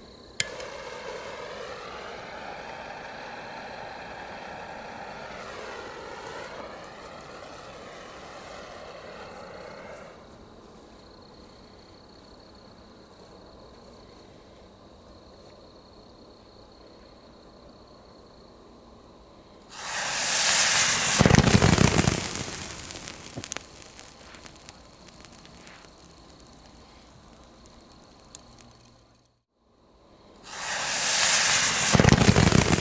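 A thermite charge of iron oxide and aluminum powder, set off with magnesium, goes up about twenty seconds in with a sudden loud rushing hiss lasting a few seconds. The hiss then dies away in scattered crackles and pops. Before that, a quieter steady hiss that starts with a click fills the first ten seconds.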